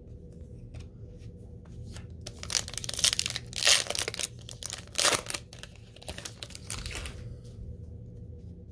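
A foil trading-card pack being torn open by hand: several crinkly tears in quick succession between about two and five seconds in, loudest near the middle, followed by lighter rustling of the wrapper and cards.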